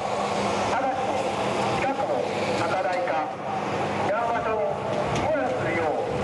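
Tsunami evacuation warning in Japanese, broadcast over outdoor public-address loudspeaker horns, telling anyone near the coast to evacuate to higher ground immediately. The announcement runs over a steady low hum.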